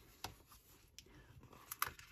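Faint handling sounds of a paper sticker book: light rustles and small taps of the cardstock cover and sheets, with two sharper clicks close together near the end.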